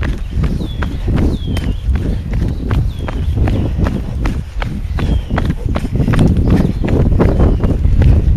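A runner's footsteps on a dirt-and-gravel track in a quick, steady rhythm, over a heavy rumble of wind and handling on the camera microphone. A bird gives short high chirps about six times.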